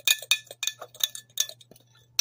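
A spoon stirring dry flour mix in a ceramic mug, clinking against the inside of the mug in quick, irregular taps that stop shortly before the end.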